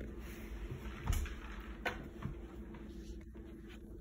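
A few light knocks over a low room hum, the strongest about a second in and two smaller ones shortly after: handling noise from the cell phone being moved around.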